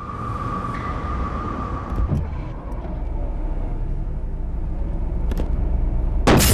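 A car running, with a heavy, steady low rumble of engine and road. A steady high whine sounds over it for the first two seconds, and there is a knock about two seconds in.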